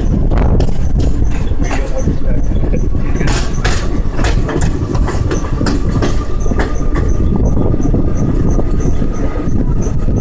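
Express train coach running on the track, a steady rumble with irregular clacks of the wheels over the rails and wind buffeting the microphone held out of the coach. A faint thin whine comes in about three seconds in and rises slightly.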